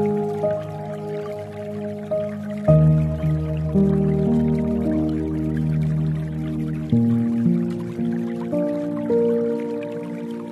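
Soft, slow piano music of sustained chords, changing about three seconds in and again about seven seconds in, over a bed of dripping water.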